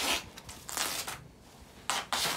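Grey duct tape pulled off the roll in short rasping pulls, three times, with clothing rustling.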